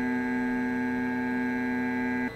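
Flashforge Dreamer 3D printer's stepper motors giving a steady whine of several fixed pitches as the machine moves into position for calibration.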